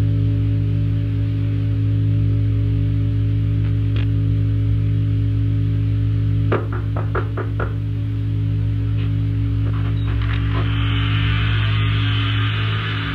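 Ambient experimental drone music: a steady low hum with several held tones, broken by a quick run of about five clicks about halfway through, with hiss rising in near the end.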